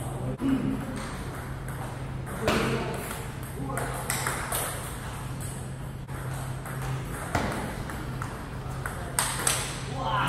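Table tennis balls clicking irregularly off bats and tabletops in rallies around the hall, over a steady low hum, with voices in the background.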